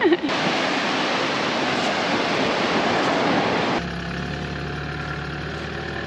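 Small waves washing up on a sandy beach, a steady rushing hiss; about four seconds in it cuts to a steady low hum of a Toyota HiAce camper van's engine idling.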